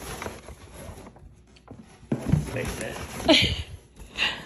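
A heavy cardboard box is handled and set down on a digital bathroom scale, with a few soft knocks in the first second. A little over halfway through come vocal sounds from the people lifting it.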